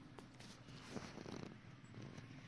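Faint mouth sounds of a baby chewing and sucking on a cotton bedsheet: a couple of small clicks, then a low rough stretch about a second in.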